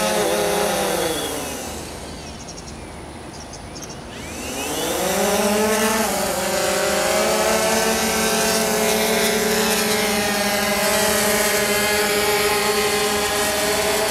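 DJI Phantom 2 quadcopter's propellers buzzing in flight. About a second in the buzz sinks in pitch and fades for a few seconds, then climbs back up and holds steady.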